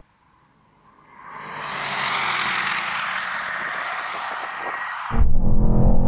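A rushing noise with no clear engine note swells in about a second in and holds for about four seconds before cutting off. It is replaced abruptly by the low drone of a twin-turbo V8 heard from inside the cabin of a Mercedes-AMG GT 63 S running flat out at about 83 mph.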